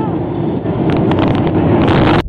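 Airliner cabin noise heard from inside, flying through cloud: a loud, steady rush of engine and airflow noise, with a few short crackles near the end.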